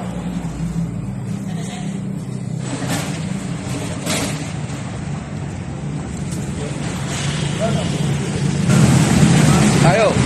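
A heavy machine on a wheeled stand rolling as it is pushed across the floor, over a steady low hum that grows louder near the end.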